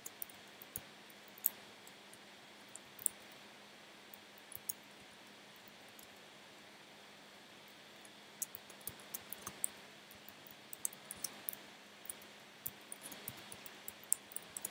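Computer keyboard keys clicking: scattered keystrokes at first, then a quick run of typing from about eight seconds in, over a faint steady hum.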